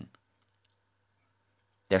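Near silence in a pause of a narrator's reading voice, with a few very faint clicks; the voice ends a word at the start and begins the next just before the end.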